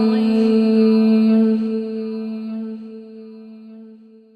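A chanted mantra: one voice holds a single long note, steady in pitch, which fades away over the last two seconds or so.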